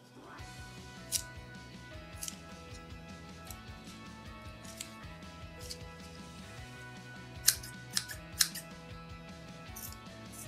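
Background music plays throughout. Near the end come three sharp snips in quick succession as metal scissors cut into the squishy toy's rubbery koosh hair.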